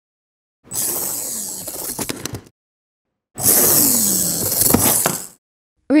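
Micro RC car's tiny electric motor and gears whirring under load as it drives up a steep foam ramp, in two runs of about two seconds each, with a high hiss and a faint whine that dips and rises. Each run ends in a few sharp ticks.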